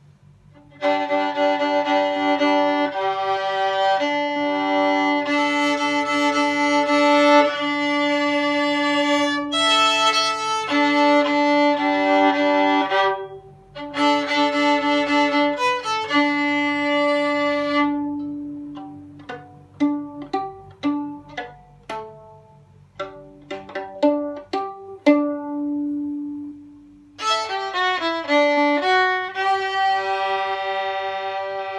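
Solo violin playing a fiddle tune slowly in bowed double stops. About eighteen seconds in it turns to short plucked pizzicato notes, then goes back to bowing near the end.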